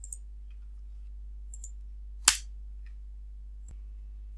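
One sharp click from computer mouse or keyboard use about halfway through, with a few faint clicks around it, over a steady low electrical hum.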